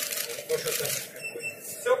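A contactless bank-card reader on a metro turnstile gives one short, high electronic beep, about half a second long, beginning just past a second in. The beep signals that the card or phone payment has been accepted and passage is allowed.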